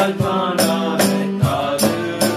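Two men singing a Tamil Christian song over strummed acoustic guitar, with cajon and hand-percussion strokes marking the beat.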